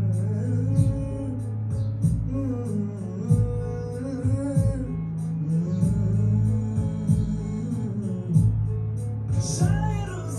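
A male singer sings a slow, sliding melody over a strummed acoustic guitar.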